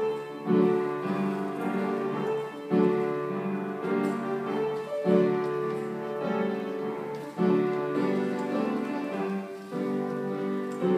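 Upright piano played in a slow piece, held chords mostly in the lower-middle range, each new phrase struck about every two to two and a half seconds.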